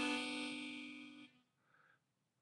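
Harmonica in the key of C sounding one held chord of more than one note, starting strong and slowly fading out about a second and a half in.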